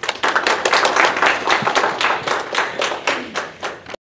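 Audience applause: many people clapping, starting at once and loud, then thinning into fewer, more separate claps and fading toward the end.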